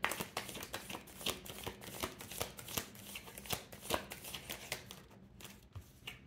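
Tarot deck being shuffled by hand: a rapid run of soft papery card flicks and riffles that thins out near the end.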